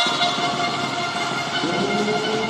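Horns blown in the arena crowd, several steady notes held together. A lower note comes in near the end and slowly rises in pitch.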